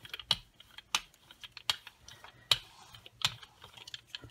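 Hand brayer rolled back and forth over a card coated in wet paint, giving a string of sharp clicks, a little under one a second, over a faint tacky crackle.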